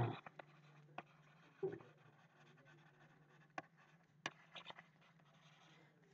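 Faint, sparse taps and scratches of a stylus writing on a tablet screen, over a steady low hum.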